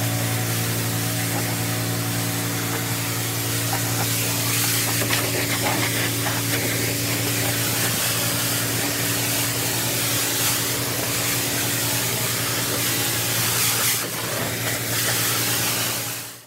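Pressure washer at work: its engine runs at a steady note while the high-pressure water jet hisses against the sheet-metal side of a semi-trailer.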